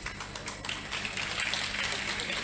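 Faint room tone of a hall heard through a live microphone feed, with a steady low hum and a few light scattered ticks.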